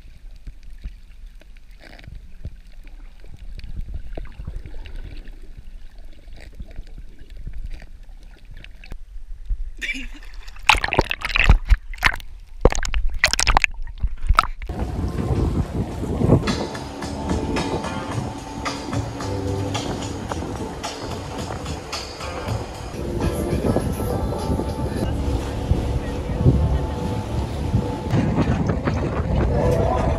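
Dull, low underwater sound from a camera held below the surface over coral while snorkelling. About ten seconds in come several loud, splashy bursts and a short laugh. From about fifteen seconds a louder, steady bed of background music takes over.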